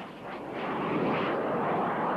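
Valkiri 127 mm multiple rocket launcher firing a salvo: the rushing noise of rocket motors, swelling about half a second in and then holding steady.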